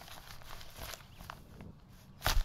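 Faint, soft footsteps: a few irregular scuffs over two seconds.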